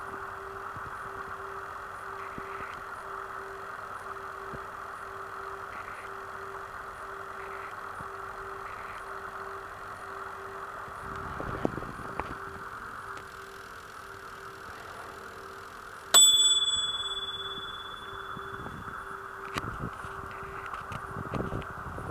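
A single bright bell-like ding from a Retort-tei retort-pouch heater's timer, about 16 seconds in, ringing out and fading over a second or so: the heating cycle has finished. Before it, a steady hum.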